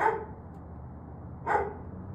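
A dog barking twice, short sharp barks about a second and a half apart, over a steady low background hum.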